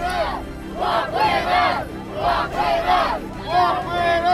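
A crowd chanting together in unison, a short chant repeated about once a second.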